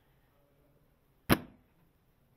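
Silverback SRS spring-powered bolt-action airsoft sniper rifle firing a single shot: one sharp, short crack about a second and a half in, with near silence around it.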